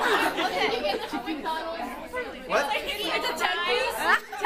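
A small group of people talking over one another: overlapping chatter with no single clear voice.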